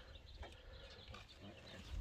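Almost silent: faint outdoor background with a low rumble.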